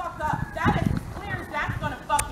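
Indistinct voices talking nearby, not clearly worded, over low irregular rumbling thumps.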